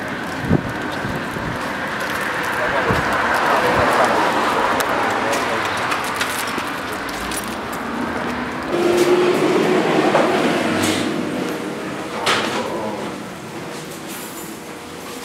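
Indistinct talking over steady city street noise, with a few sharp clicks.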